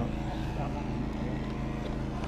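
A motor running steadily at constant speed, a low even drone that holds one pitch, with a brief "yeah" spoken over it.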